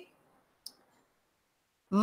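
A pause in speech, near silence apart from one short, faint click about two-thirds of a second in. Speech resumes just before the end.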